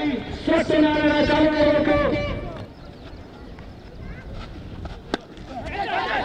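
A voice holding a long, steady-pitched call that dips at the end, about two seconds long, then quieter outdoor background with a single sharp knock about five seconds in.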